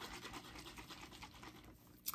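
A plastic bottle of Solinotes Blanc white tea body mist shaken quickly by hand, a faint run of rapid strokes, about ten a second, dying away near the end. The shaking remixes the liquid, whose milky part has settled out.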